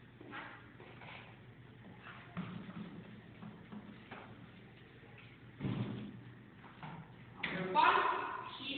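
Quiet room sound with a steady low hum and a few faint, indistinct short sounds. A person's voice starts speaking near the end.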